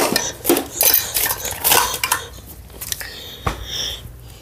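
Close handling noise: a run of short clicks, light rattles and rustles as the phone is moved about against clothing, with a low thump about three and a half seconds in.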